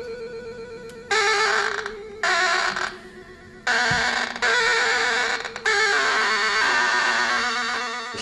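Small red toy keyboard, fitted with extra knobs and switches, played by hand: a steady warbling electronic tone, broken three times by loud harsh buzzing bursts, the longest lasting about three seconds.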